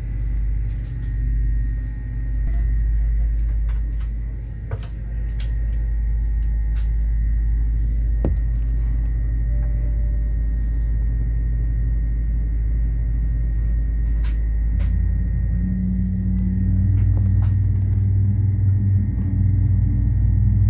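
Steady low rumble and hum inside a jet airliner's cabin on the ground, with a few faint clicks. About fifteen seconds in, a low hum grows louder and a higher hum joins it.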